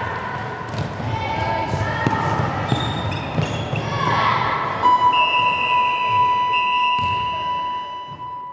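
A handball bouncing and thudding on a hardwood sports-hall court amid children's shouts, echoing in the large hall. From about five seconds in, a long steady high tone holds until the end.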